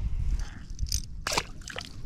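A small bullhead catfish dropped from a fish gripper into shallow pond water: a short splash about a second and a quarter in, with smaller splashy sounds just before and after it.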